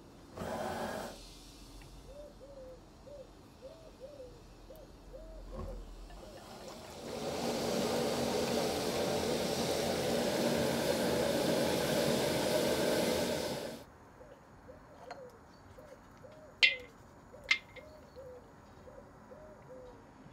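Liquid pouring in a steady stream from a glass bottle into a wok for about seven seconds in the middle. Before and after it, a bird calls in short, low, repeated notes, and two sharp clicks come near the end.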